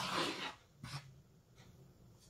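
Wooden spoon stirring dry flour in a plastic bowl: soft scraping, rubbing strokes, the last one short, about a second in.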